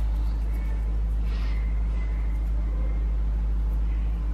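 A steady low rumble with a faint hum over it, unchanging throughout. A faint soft hiss can be heard about a second in.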